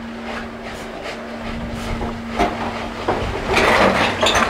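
Slow, shuffling footsteps and light knocks of people easing an elderly woman through a doorway, over a steady low hum, with a louder scraping, rattling noise near the end.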